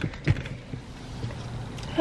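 Light knocks and rustling as someone shifts in a car seat, over a low, steady rumble inside the car cabin.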